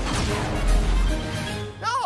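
Cartoon rocket-boost sound effect: a sudden blast of rushing noise with a deep rumble that swells and then fades, over background music.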